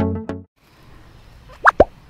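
Plucked-string intro music ends about half a second in, followed by faint hiss and then two quick cartoon-style 'plop' sound effects near the end, the second sliding sharply down in pitch.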